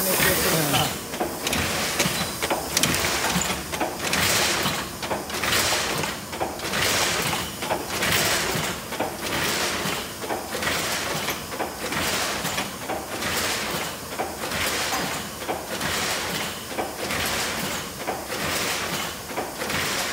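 Bobst SP 1080 E automatic flatbed die-cutter running, its machine cycle giving a rush of noise about once every 1.3 seconds in a steady rhythm.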